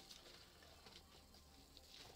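Very faint rustling of bubble wrap and polystyrene packing peanuts being handled.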